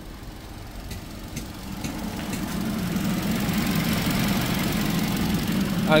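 Opel Corsa's naturally aspirated 1.4 Ecotec four-cylinder petrol engine idling after a coolant refill, run to bleed air from the cooling system. The electric radiator fan comes on about two seconds in and keeps running as a steady rush over the idle.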